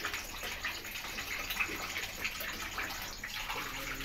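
Carrots and potatoes simmering in a watery sauce in a wok on a gas stove: a steady, even hiss of bubbling liquid.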